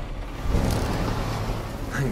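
Low, steady rumble of a vehicle on the move, heard from inside its cab, growing a little louder about half a second in.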